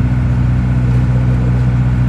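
Mercedes-Benz 608 light truck's diesel engine running steadily on the highway, heard from inside the cab as a constant low drone.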